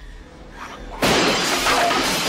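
A chair smashing through a glass patio door: a sudden loud crash about a second in, with the breaking glass jangling and ringing on afterwards.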